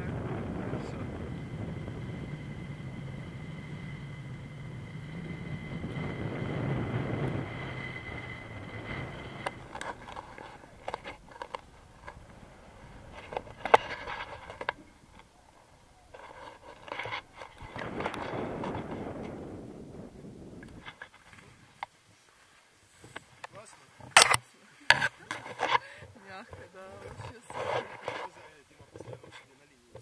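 Wind rushing over the action camera's microphone during a tandem paraglider's descent, loud for the first ten seconds, with another swell later on. After that come scattered clicks and rustles, and in the last few seconds a run of sharp knocks as the pair land and handle the harness.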